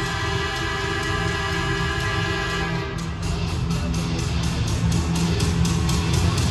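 Loud music over an arena's sound system: held, dramatic chords for the first half, then a fast, steady beat kicks in about halfway through.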